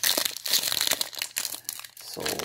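Foil trading-card pack wrapper crinkling as it is handled, a dense run of crackles loudest in the first second.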